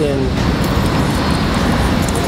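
Street traffic noise: a car passing close by, a loud, even rumble with no break in it.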